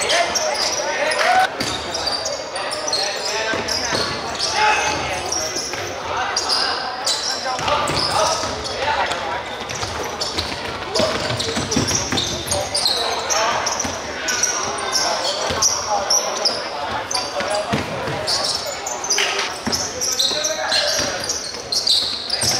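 Live court sound of an indoor basketball game: the ball bouncing on the wooden floor, shoes squeaking and players' voices, echoing in a large sports hall.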